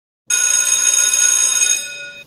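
School bell ringing loud and steady, several clear tones at once. It starts suddenly about a quarter second in and dies away near the end.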